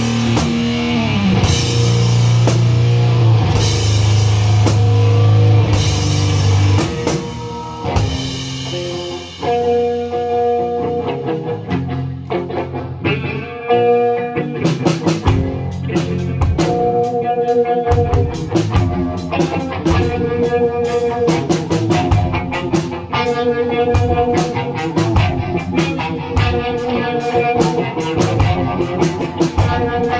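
Heavy doom/stoner rock played live on electric guitar and drum kit. It opens with heavy, low, sustained guitar notes under cymbal wash, dips briefly about eight seconds in, then moves into a riff of repeated held guitar notes over steady drums, with busy cymbal strokes coming back about halfway through.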